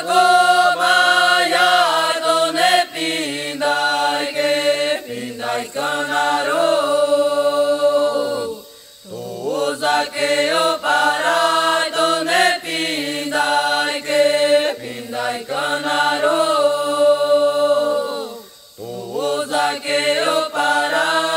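Unaccompanied Yawanawá chant, sung voice only, in long held melodic phrases. The singing breaks off briefly about nine seconds in and again near the end.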